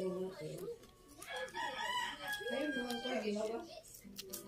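A long fowl call with a held pitch, starting about a second in and lasting about two and a half seconds.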